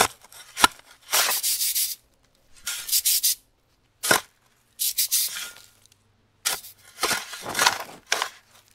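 A dachshund digging in loose beach sand with its front paws: repeated bursts of scraping, each half a second to a second long, with a short click or two near the start.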